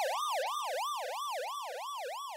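Ambulance siren in a rapid yelp, sweeping up and down about three to four times a second. It grows quieter and slightly lower in pitch as the ambulance moves away from the listener, a Doppler shift.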